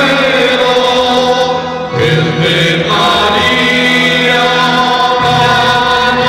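Voices singing a slow devotional hymn together in long held notes, the melody moving to new notes about two seconds in and again around three seconds.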